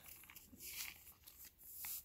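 Faint handling sounds of a plastic water bottle in a stretchy fabric sleeve: a hand rubbing and shifting its grip on the bottle, with a small click near the end as the fingers take hold of the lid.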